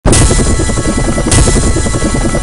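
Music from a TV channel's logo ident, mixed with a helicopter rotor sound effect that beats steadily underneath. A sudden bright burst comes a little over a second in.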